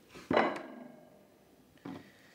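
Kitchen knife cutting through a block of cheese and knocking down onto a plastic chopping board: a sharp knock about a third of a second in with a short ringing tail, then a second, softer knock near the end.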